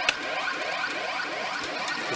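CR Oomi Monogatari 4 pachinko machine playing its electronic sound effects while the reels spin: a repeating pattern of falling tones, about three a second, after a short click at the start, over the din of the pachinko hall.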